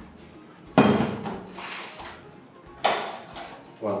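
A stainless-steel stand-mixer bowl clanging against a steel worktable twice, about two seconds apart, each hit ringing briefly as it dies away.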